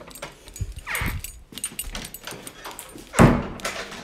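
A house door being opened and closed: latch clicks, a creak about a second in, and a loud thud as it shuts a little after three seconds.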